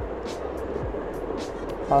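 Background music with a light, regular beat over steady room noise and a low hum.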